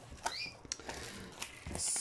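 Faint rustling and scraping of plastic shrink wrap on a cardboard box as it is slit with a knife and worked loose, with a short squeak about half a second in and a brief crinkle near the end.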